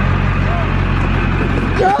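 Pickup truck idling close by: a steady low hum that cuts off suddenly near the end, with a short laugh.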